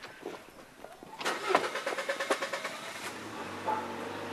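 Car engine cranking on its starter for about a second, then catching and settling into a steady idle.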